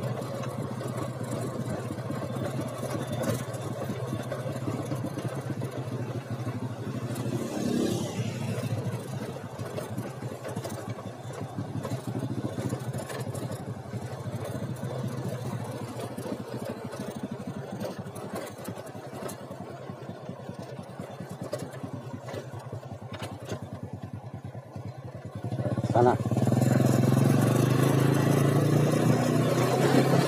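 Motorcycle engine running steadily on the move. About 26 seconds in it gets louder and rises in pitch as it accelerates.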